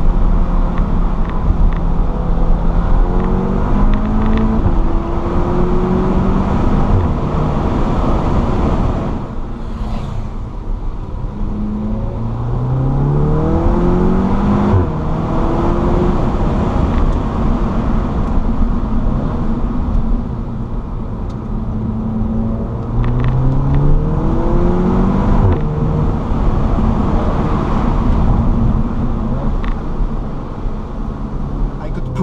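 ABT-tuned Audi S3 Sportback's turbocharged four-cylinder heard from inside the cabin over road noise. It accelerates hard through the gears several times, the revs climbing and dropping at each upshift. Short exhaust burps, a "fart" or "burp", come at the gear changes.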